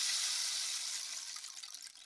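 A steady high rushing hiss, like running water, fading gradually away.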